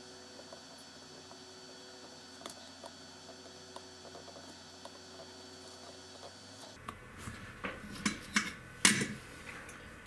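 A faint, steady hum with occasional light ticks. About seven seconds in, a run of sharp clicks and clinks of small hard objects being handled begins, the loudest a little before the end.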